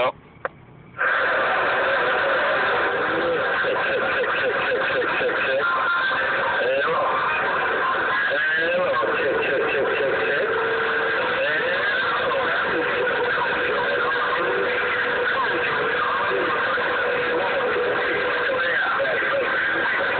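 A Magnum S-980 CB radio's speaker carrying a loud, garbled incoming transmission, starting about a second in after a short quiet: voices smeared into a dense wash with steady whistling tones under them. The other station is running full power and its signal is splattering over the neighboring channels.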